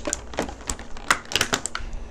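Clear plastic blister packaging crackling and clicking as it is bent and pulled apart to free a toy figure: a quick, irregular run of sharp clicks.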